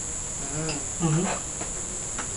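Steady high-pitched insect trill, typical of crickets, running unbroken under the dialogue.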